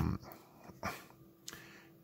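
A low, steady hummed voice tone cuts off just after the start. Then it is mostly quiet, with a faint short sound and a small click near the middle.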